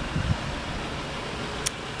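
Steady low background noise with a brief low rumble at the start and a single sharp click near the end.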